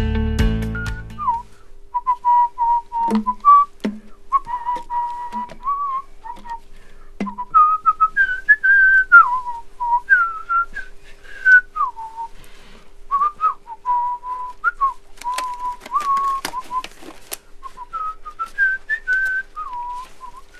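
A person whistling a wandering tune that keeps returning to one note with short higher runs, with scattered light clicks and handling sounds. Guitar music cuts out about a second in.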